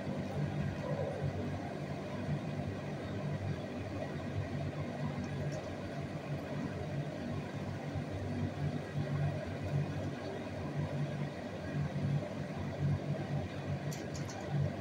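Steady low hum over background noise, swelling and fading irregularly.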